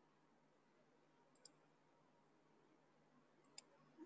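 Near silence, with two faint single mouse clicks: one about a second and a half in and one near the end.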